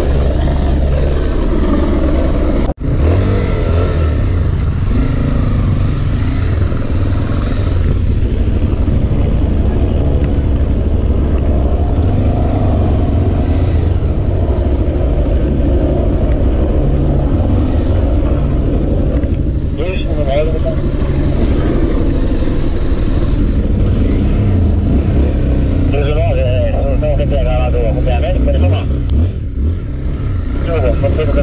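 Police dual-sport motorcycle's single-cylinder engine running, then pulling away over a muddy dirt track, with a heavy steady rumble under it.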